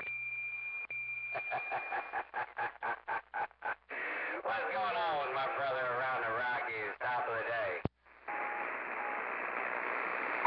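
Two-way radio receiver audio after the call is handed over: a click, a steady high whistle and hum, then a rapidly chopped, pulsing signal about four to five times a second, followed by a distant station's voice coming through the static. Near the end another sharp click and a short drop-out, then hiss with a faint steady tone.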